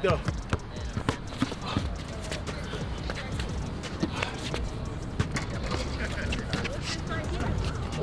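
Basketball being dribbled on an outdoor court, a string of irregular bounces over steady outdoor background noise.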